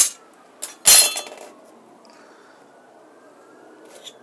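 Steel knife blanks clinking and clattering against each other and the workbench as they are handled: a sharp clink at the start and a louder, ringing clatter about a second in.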